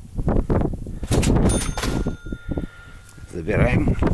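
Wind buffeting the microphone in gusts, with a sharp metallic click about a second in, followed by a steady high electronic beep lasting about two seconds.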